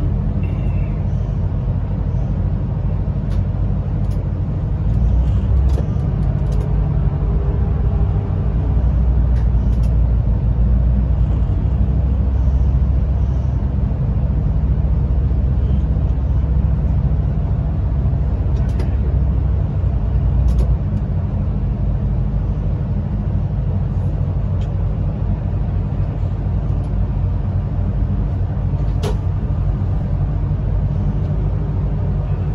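Steady low rumble of a train running through a long rock tunnel, heard from inside the driver's cab. It swells for about fifteen seconds from about five seconds in, with a few faint clicks.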